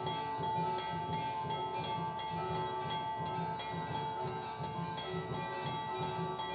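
Aarti bells and chimes ringing over a steady fast drum beat, with a long held tone underneath.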